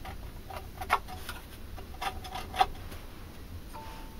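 Steel divider point scratching a scribe line into a mild steel plate through permanent marker: a few short, sharp scratches and ticks with gaps between them.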